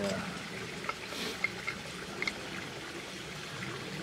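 Steady background noise with a trickling, running-water quality, with a few faint short ticks or chirps.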